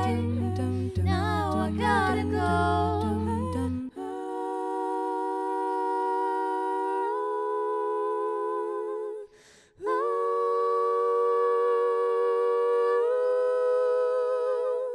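A female vocal quartet singing a cappella. For about four seconds a moving lead melody runs over a low sustained bass part. Then the voices hold chords in close harmony, shifting to new chords twice, with a short break about two thirds of the way through.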